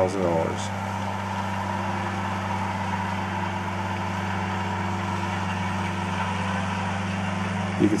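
Flory-built tracked pruning shredder, its 450-horsepower engine and front hammer mill running, a steady even drone made of several constant low pitches.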